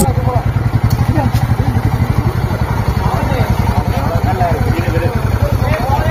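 Motorcycle engine running at low revs with a fast, even pulse, with men talking over it.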